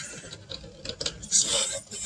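All-lead-screw 3D printer (3DLS) running a fast print: its stepper motors whirring and the lead screws driving the print head in quick, uneven moves, over the steady hum of its fans.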